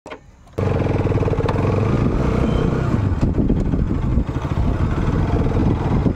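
Bajaj Pulsar RS200 motorcycle's single-cylinder engine running as the bike rides along a rough dirt path. The sound comes in suddenly about half a second in and stays loud and steady.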